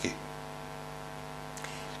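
Steady electrical mains hum: a low buzzing tone with a stack of steady overtones, unchanging in level.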